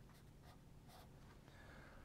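Very faint pencil strokes scratching on paper, a few light marks in the first second, over near silence.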